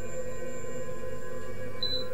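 Background music: a steady ambient drone of several sustained tones, with no beat.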